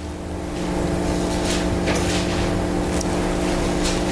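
A steady low hum made of several even tones, over a layer of hiss, holding at one level throughout.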